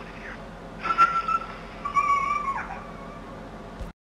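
Two short, high-pitched animal-like cries, each held at a steady pitch, the second dropping away at its end; the sound then cuts off abruptly.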